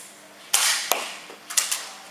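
Nerf dart blaster firing: a short hissing puff of air ending in a sharp click about half a second in, then a second similar burst with clicks about a second later.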